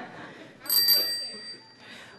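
A bicycle bell rung twice in quick succession about two-thirds of a second in, its high ring hanging on for about a second before fading.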